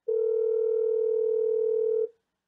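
Telephone dial tone on the line after a hang-up: one steady tone for about two seconds that cuts off suddenly.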